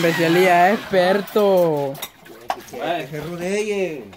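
A person's voice calling out in long, drawn-out tones that slide up and down in pitch, with a short break about two seconds in.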